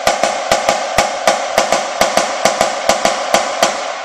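Premier marching snare drum played with sticks in the double beat exercise: a steady run of double strokes (diddles) stroked out so that both notes of each pair sound the same, nice and solid. The run stops with a last stroke at the end.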